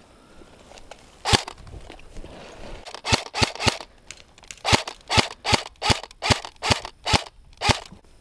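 Airsoft gun firing single shots, sharp pops: one, then three in quick succession, then eight more at about two a second.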